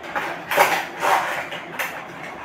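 Packaging handled at close range: a thin plastic sweet container and a cardboard box knocking and rustling in a few short bursts.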